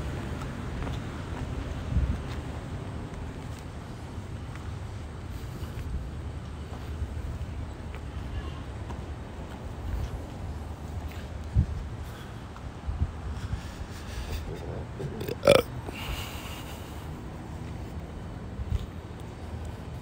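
Wind rumbling on a handheld microphone outdoors, with a few dull knocks and one sharp clack about fifteen seconds in.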